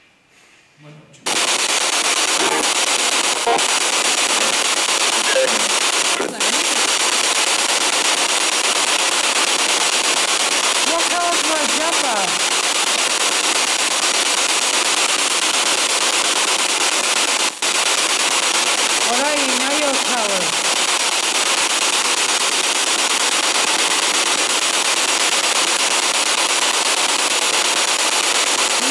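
Loud, steady radio static hiss from a small LCD radio played through a cube speaker, used as a ghost-hunting spirit box. It switches on abruptly about a second in, with two brief dropouts and a few short warbling snatches of voice-like sound in the noise.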